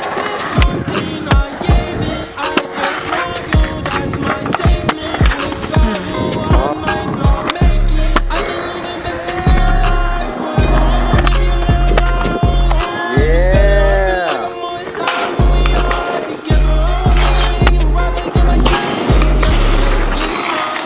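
Skateboard wheels rolling on concrete with the sharp knocks of the board popping and landing, under background music; a heavy bass beat comes in about eight seconds in.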